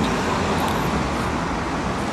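Steady noise of passing road traffic on a city street, an even wash of sound without distinct events.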